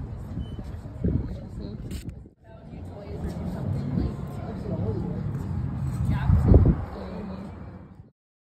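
Indistinct voices over outdoor traffic noise and low rumble, with a brief break about two seconds in and a loud low thump near the end.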